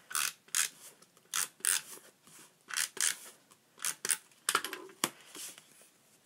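Tape runner drawn across cardstock in about a dozen short strokes, often in quick pairs, laying down adhesive to stick one paper layer onto another.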